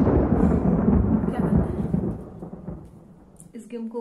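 Loud thunder rumbling, then fading away over about three seconds.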